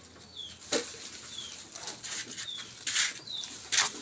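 A small bird chirping about once a second, each chirp a short, high, falling note, over irregular rustles and knocks from handling.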